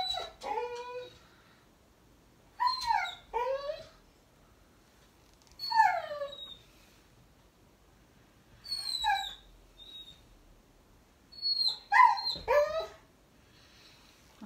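A dog whining over and over, short high-pitched whines that fall in pitch, coming in clusters every few seconds.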